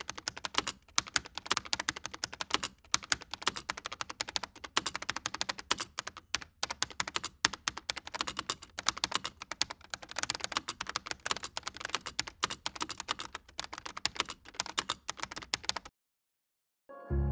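Fast, continuous computer keyboard typing: a dense run of quick keystroke clicks.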